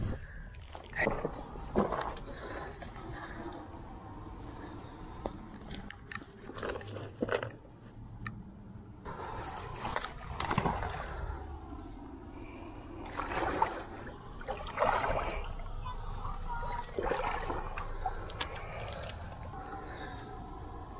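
Shallow water sloshing and splashing in irregular bursts, louder around ten seconds in and again several times towards the end, over a steady low rumble.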